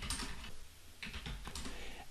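Computer keyboard being typed on: a short run of quiet, irregular keystrokes.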